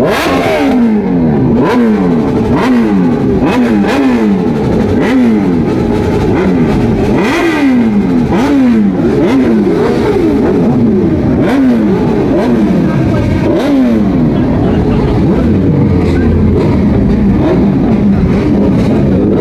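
Superbike engines revved over and over in quick throttle blips, each rising and falling in pitch about once a second, the sweeps of more than one bike overlapping.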